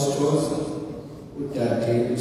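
A man's voice reading aloud into a microphone, in phrases with a short pause about a second in.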